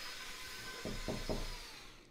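Three quick knocks, like a knock at a door, over a faint steady hiss.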